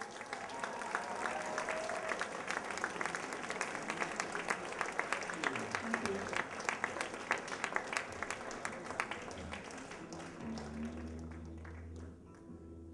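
Audience applauding, the clapping dense at first and dying away about ten seconds in. A guitar starts playing a few sustained notes near the end.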